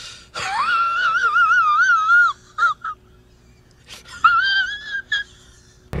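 A man's high-pitched wheezing laugh: one long wavering squeal, then short gasps and a second, shorter squeal.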